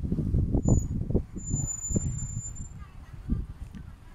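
Street and traffic background: a low, uneven rumble of vehicles and wind on the microphone, with a thin high-pitched squeal lasting about a second around the middle.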